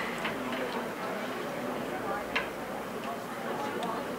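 Ice clinking against a drinking glass as a drink is stirred with a straw: a few light, irregular clicks over a steady room hiss.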